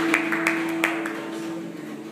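Rhythmic hand clapping, about three claps a second, stops about a second in. Under it a held note from the worship band fades out as the song ends.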